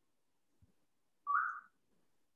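A single short whistle-like chirp, a little rising in pitch and lasting under half a second, with a faint low knock shortly before it.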